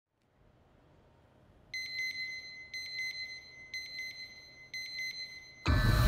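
Electronic alarm beeping: four bursts about a second apart, each a quick run of high beeps. Near the end, loud music with a deep low drone starts abruptly.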